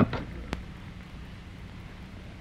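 A revolver's hammer clicks once, sharply, about half a second in. Behind it runs the steady low hum and hiss of an old film soundtrack.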